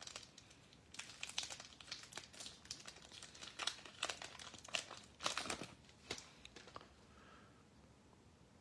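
Foil wrapper of a trading-card pack crinkling and tearing as it is peeled open by hand: a faint run of irregular crackles and rustles that dies away near the end.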